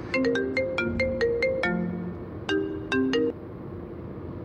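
Mobile phone ringtone: a short melody of bright, ringing notes plays through once, then starts again after a brief pause and cuts off abruptly a little past three seconds in.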